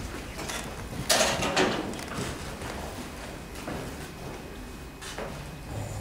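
Paper rustles and light knocks as sheet music is arranged on a grand piano's music desk and the pianist sits down at the instrument, the loudest rustle about a second in.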